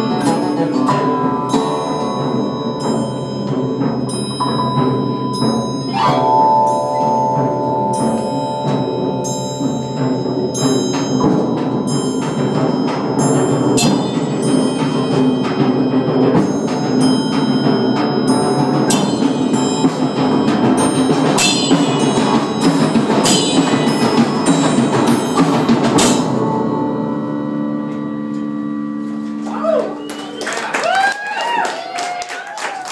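Percussion ensemble playing a piece: struck mallet-percussion notes ring out in dense runs over held low tones. About 26 seconds in the struck notes stop and only the low held tones go on sounding.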